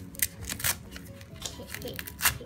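Tape tabs of a disposable diaper being peeled open: three short ripping sounds.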